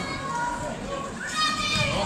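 Arena crowd shouting and chattering, with children's high voices calling out over the general din.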